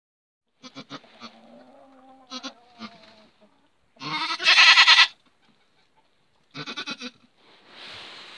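Goat bleating during a birth: a drawn-out low bleat in the first few seconds, a loud bleat about four seconds in, and a short stuttering bleat near the end.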